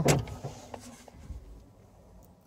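2020 Mazda 3 central locking responding to the key fob's lock button: a sharp click as the door locks engage, then the electric motors of the power-folding side mirrors whirring faintly as the mirrors fold in.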